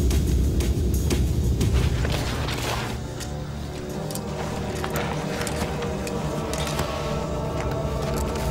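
Documentary background music: a deep low drone under sustained held tones, with scattered sharp clicks through it. It dips slightly in level about three seconds in.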